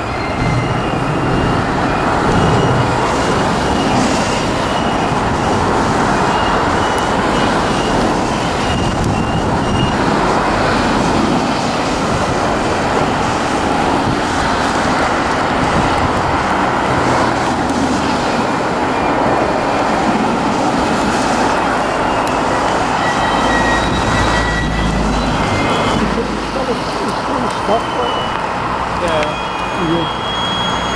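Loaded coal hopper wagons of a freight train rolling past close by: a steady noise of wheels running on the rails, with faint high wheel squeals coming and going.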